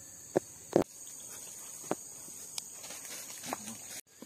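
Insects chirring steadily in one high, unbroken band, with a few sharp clicks or taps scattered over it, the two loudest within the first second.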